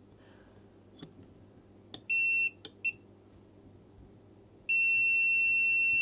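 Multimeter continuity beeper: a short high beep about two seconds in, a quick chirp, then a long steady beep starting near the end as the probes sit across a capacitor, signalling a short there. A couple of light clicks of the probe tips touching the board come before the beeps.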